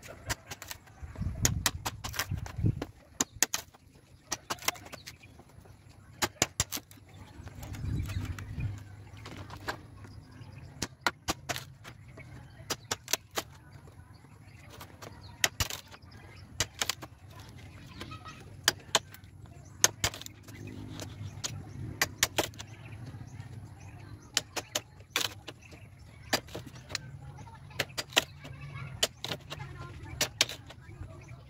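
Hatchet chopping and splitting bamboo poles: a long run of sharp, irregular knocks, often several a second. A low hum runs underneath and swells about a second in and again around eight seconds.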